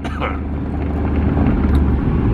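Van engine and tyre noise heard from inside the cab while driving: a steady low rumble that grows slightly toward the end.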